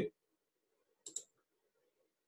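Two quick clicks close together about a second in, over faint room tone.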